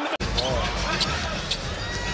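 A basketball being dribbled on a hardwood court, a few sharp bounces over a steady low arena crowd rumble, starting after a sudden cut a fraction of a second in.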